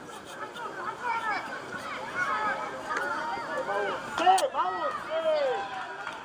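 Overlapping shouts and calls from several voices across a football pitch, many short rising-and-falling cries at once, with a single sharp knock about four and a half seconds in.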